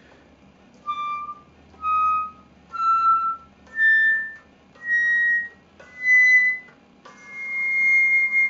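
Silver Trevor James Recital flute with a Flutemakers Guild of London headjoint, played quietly in its top register: seven separate high notes stepping upward, the last held longer. This is a test of soft playing at the top of the instrument's range, and the top notes come out quietly without trouble.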